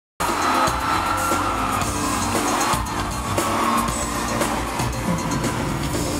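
Live pop concert music played loud through a hall's sound system, heard from within the audience, with the crowd cheering over it.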